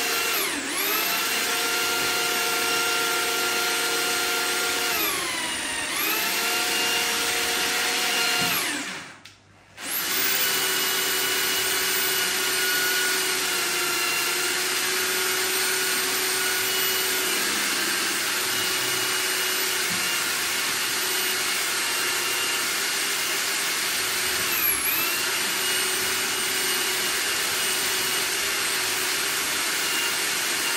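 Handheld electric drill spinning the drum of a drum-type drain snake to clear a blocked kitchen sink drain. The steady motor whine sags in pitch a few times as it slows, cuts out briefly about nine seconds in, and starts again a second later.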